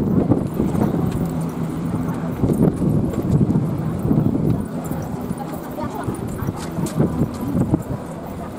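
Wind buffeting the camera microphone in uneven low rumbling gusts, with indistinct voices of people nearby.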